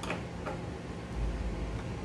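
A few faint clicks from a screwdriver turning the CPU heatsink screws, with a short low rumble about halfway through.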